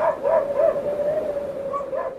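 Huskies whining and howling, a steady held howl with short yelps over it.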